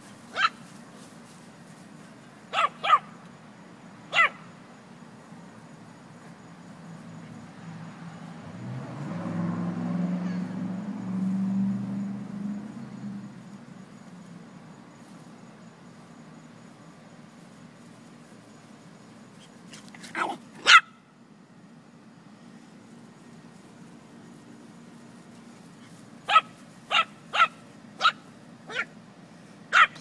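Small dogs barking in short, sharp yaps while playing: a few near the start, a pair about twenty seconds in and a quick run of five near the end. In the middle a low rumble swells and fades.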